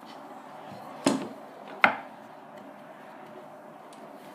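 Wooden rolling pin rolling out dough on a wooden board, a low steady rustle, broken by two sharp knocks about a second in and again under a second later.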